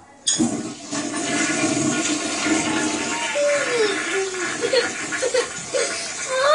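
A household toilet flushed by its lever: a sudden rush of water that starts within the first second and runs for about five seconds. A small child's crying wavers over it in the second half.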